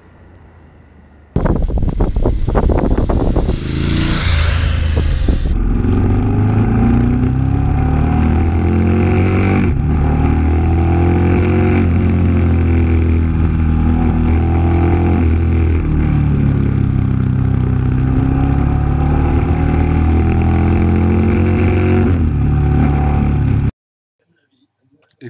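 BMW F850GS's 853 cc parallel-twin engine heard from on board while riding, its pitch rising and falling as it accelerates and changes gear. It starts abruptly about a second in and cuts off just before the end.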